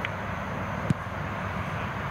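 Steady low outdoor rumble with a single short, sharp thud about a second in, a soccer ball being kicked.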